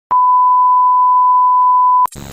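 A single steady high beep, the test-pattern tone that goes with TV colour bars, starting just after the beginning and held at one pitch and level throughout.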